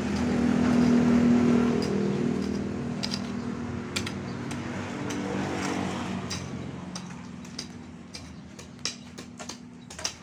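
A road vehicle's engine runs steadily, loudest about a second in, then fades away as it recedes. A few sharp clicks or knocks come in the second half.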